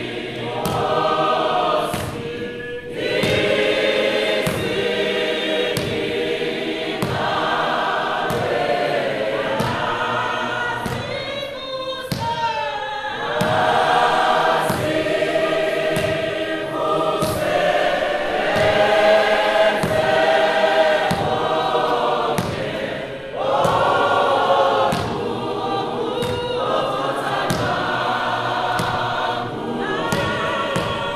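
A church congregation and choir singing a hymn together, many voices in slow, sustained phrases with short breaks between lines. A steady beat of light, sharp taps runs under the singing.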